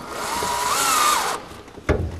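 Cordless drill running for about a second and a half, its motor whine rising in pitch before it stops. A single sharp knock follows near the end.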